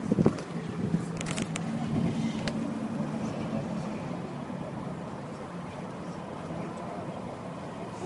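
Street traffic noise, with a motor vehicle's engine humming steadily for the first few seconds and then fading. A few sharp clicks come between about one and two and a half seconds in.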